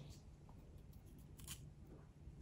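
Faint crisp cuts and clicks of a thin carving knife slicing into the raw flesh of a radish, a few short sharp ticks, the clearest about a second and a half in.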